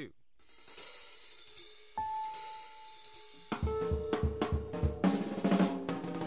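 Jazz backing track starting up: a cymbal swell, then a single held note about two seconds in, and at about three and a half seconds the drum kit comes in with bass and other pitched instruments.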